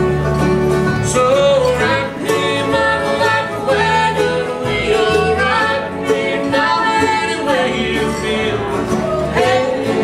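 A bluegrass band playing live: acoustic guitars, upright bass and fiddle, with voices singing over them.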